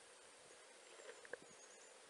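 Near silence: faint outdoor background hiss, with a few faint ticks a little after a second in.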